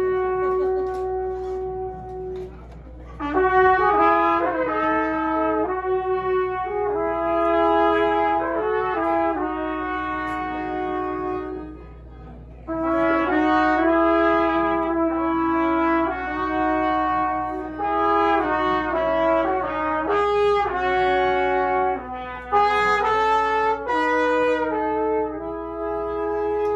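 Live band music in a club: a single melodic lead line of held notes played in phrases over a low steady hum, pausing briefly about three seconds in and again about twelve seconds in.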